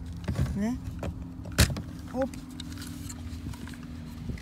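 A single sharp plastic click about one and a half seconds in, as the wiring connector is unplugged from a Lada Priora's power-window switch block, with smaller plastic handling clicks before it.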